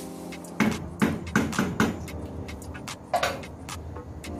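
Wooden spoon knocking against the side of a stainless steel pot while rice is stirred into the liquid: a quick run of sharp knocks in the first two seconds and one more near the end. Background music plays underneath.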